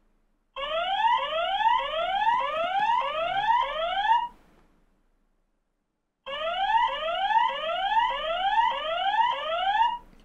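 GALAYOU G2 home security camera's built-in siren sounding: a repeating rising whoop, a little under two sweeps a second. It sounds twice, each time for about four seconds, with a pause of about two seconds between.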